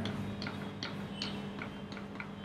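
Chalk on a blackboard drawing a dashed line: a row of short, sharp chalk taps, about three a second.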